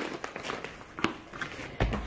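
Groceries being unpacked from a fabric shopping bag and set down: a few light taps and knocks, then a louder low thump near the end.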